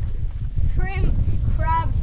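Wind buffeting the microphone as a steady low rumble, with a child's voice answering in two short phrases about a second in and near the end.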